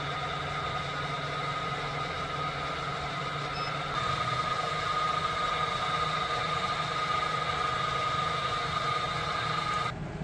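Bridgeport milling machine running steadily, its spindle turning an edge finder, with a constant hum and whine. It gets slightly louder about four seconds in.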